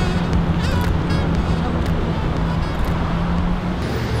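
City street traffic noise with a steady low hum that stops shortly before the end.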